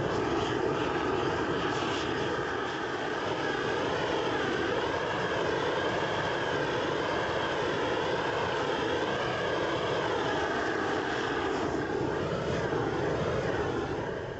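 Hand-held gas torch burning with a steady rushing noise, its tone wavering slowly as the flame is swept over the steel pipe to preheat it.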